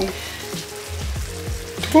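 Diced pear and gorgonzola sizzling softly in a frying pan while a wooden spatula stirs them.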